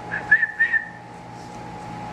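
A high, thin whistle, one wavering tone that stops about a second in.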